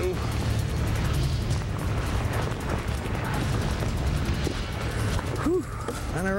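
Strong wind buffeting the microphone on an open boat in heavy wind: a continuous low rumble with a rushing haze over it.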